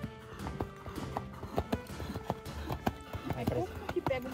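Horse hooves thudding on a wet dirt arena as a horse lopes past, in an uneven run of hoofbeats.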